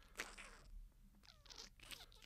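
Near silence, with a few faint rustles and clicks.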